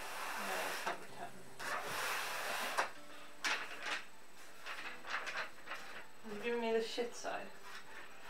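Rustling and rubbing of gaming-chair parts and packaging being handled during assembly, with a couple of sharp knocks near the middle. A faint voice speaks briefly near the end.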